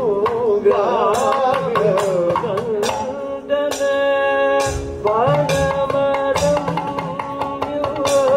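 Kathakali music: men singing a gliding, ornamented Carnatic-style melody with a long held note near the middle, accompanied by hand-played strokes on a maddalam barrel drum.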